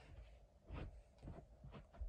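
Near silence with a few faint, short rustles: coco fibre substrate being put by hand into a small plastic cup.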